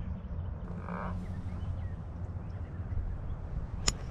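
A golf club strikes a ball on a fairway shot: one sharp, very short crack just before the end, the loudest sound here, over a low steady rumble.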